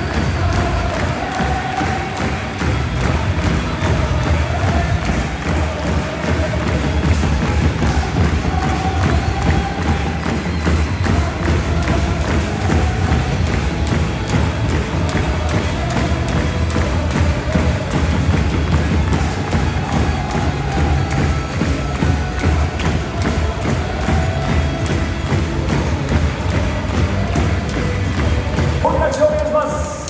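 Football supporters' chant: a large stadium crowd singing together over drum beats.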